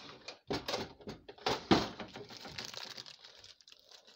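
A few sharp knocks and clatters of things being handled on a kitchen counter, the loudest about a second and a half in, followed by the rustle of a seasoning packet being handled.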